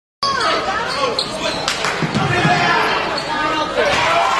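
Live basketball game sound in a school gym: a ball bouncing on the hardwood court amid crowd and players' voices. It starts a moment in, after a brief silence, and a single sharp knock stands out near the middle.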